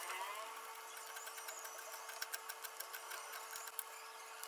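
Kitchen knife shredding cabbage on a wooden cutting board: a run of quick, crisp cuts and taps of the blade on the board, over a faint steady hum.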